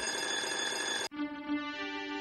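Electronic win jingle of a video slot game: steady bell-like ringing tones that switch abruptly to a lower set of tones about a second in, marking a line win during free games.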